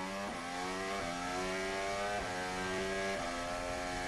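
Onboard engine note of a McLaren MCL60 Formula 1 car's Mercedes 1.6-litre turbo-hybrid V6, running at reduced pace behind the safety car. It holds a steady note, with the pitch stepping to a new level about once a second as the gears change.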